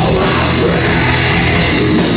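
Metal band playing live, loud and dense: distorted electric guitars and bass over a drum kit, without a break.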